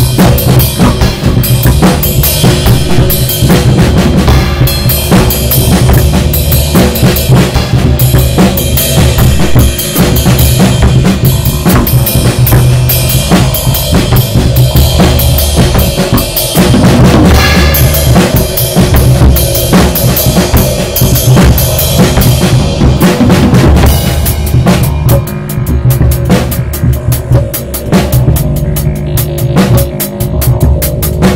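Instrumental rock jam: a drum kit playing a busy, steady beat on bass drum and snare, over a slap bass line and a sustained Korg synthesizer part. The high, cymbal-bright part of the drumming thins out over the last several seconds.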